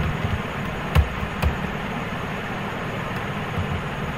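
Two short computer-keyboard clicks about a second in, over a steady background hiss and low rumble.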